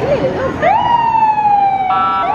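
A vintage ambulance's siren: it sweeps up sharply in pitch about half a second in, then slowly slides down while held.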